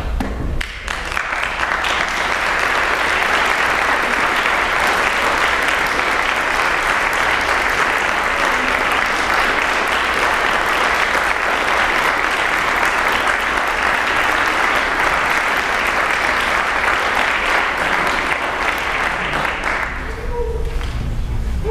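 Audience applauding, building up about a second in and holding steady and full until it dies down near the end.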